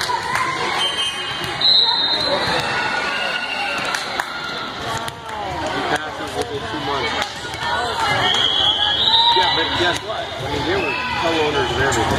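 Many overlapping voices of players and spectators chattering in an echoing gym between volleyball rallies, with a few sharp thuds of a volleyball bouncing on the court and a couple of brief high-pitched tones.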